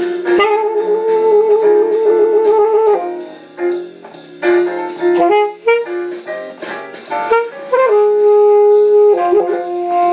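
Selmer Super Action 80 Series II alto saxophone playing a bebop jazz line. The phrase has a quieter gap a few seconds in and ends on a long held note near the end.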